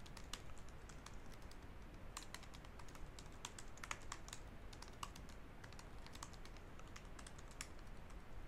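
Quiet typing on a computer keyboard: irregular runs of short keystroke clicks as a line of code is typed.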